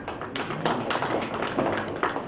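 Scattered hand clapping: a run of quick, irregular claps from a small part of the audience.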